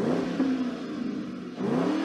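Ford Mustang GT's 4.6-litre V8 free-revving with the car standing: a blip of the throttle falls back, and a second blip rises about one and a half seconds in.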